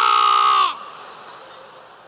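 A man's loud, high-pitched scream held on one pitch, stopping sharply under a second in: a comic vocal impression of a reporter being hit by a car.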